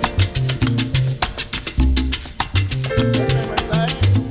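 Instrumental salsa-style Latin music: a dense percussion rhythm over a moving bass line.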